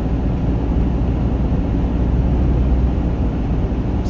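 Steady low rumble of engine and tyre noise heard inside a four-wheel-drive vehicle's cabin, cruising at about 80 km/h on winter tyres over an icy, snow-covered highway.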